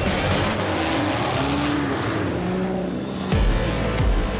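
Racing car engine noise, its pitch rising and falling, mixed with background music. A little after three seconds in, a deeper, louder engine sound takes over.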